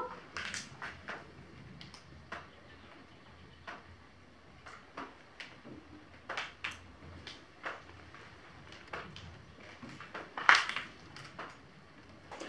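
Faint, irregular clicks and taps in a quiet room, the loudest a pair about ten and a half seconds in.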